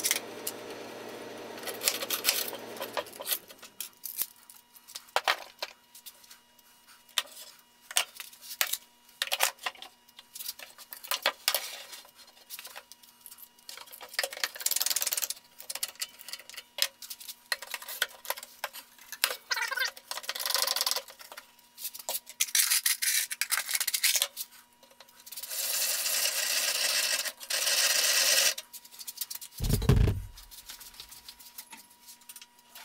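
Hand-tool work at a wooden workbench: irregular clicks, knocks and short scrapes as screws, tools and bar clamps are picked up, set down and worked, with a longer stretch of rubbing or scraping near the end. A low steady hum stops about three seconds in.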